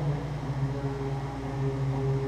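Live Arabic ensemble music: a single low note held steadily, with no melodic movement or drum strokes showing.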